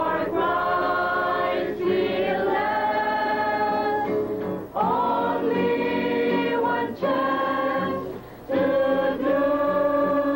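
A choir singing, its phrases broken by short pauses every two to three seconds.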